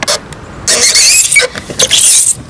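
Loud high-pitched squeaking of bare legs rubbing on a plastic playground slide during a ride down it. There is one long squeal about a second in and a shorter one near the end.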